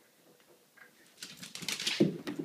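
A pug's paws and claws pattering in a quick run of light taps, starting about a second in and getting louder, as the dog dashes off after a thrown toy.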